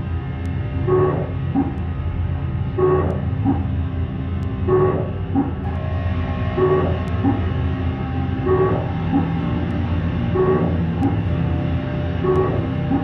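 Improvised experimental drone music from electric bass through effects pedals and electronics: a steady low drone under a looped figure of notes that repeats about every two seconds.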